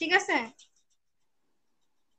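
A man's voice says a short phrase ("thik hai"), then the sound cuts to complete silence.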